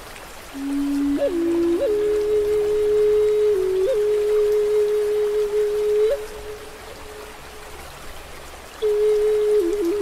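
Native American flute playing a slow melody. A low note rises to a long held note broken by brief upward flicks, the flute stops about six seconds in, and a new phrase with a quick trill begins near the end. Under it runs a steady wash of running water.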